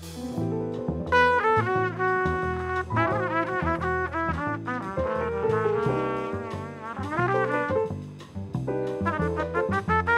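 Live small-group jazz: a saxophone plays a running melodic line over upright bass, piano and drums, entering about a second in.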